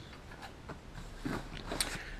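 Faint clicks, taps and rustles of small camera gear, such as plastic lens caps, being picked out of a padded camera bag by hand.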